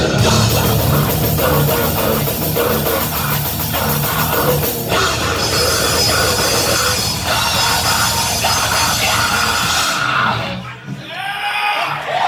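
A heavy metal band playing live, with distorted electric guitars, a drum kit and vocals. The music stops about ten seconds in.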